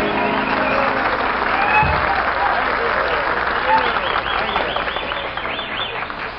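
Studio audience applauding, with cheering voices mixed in.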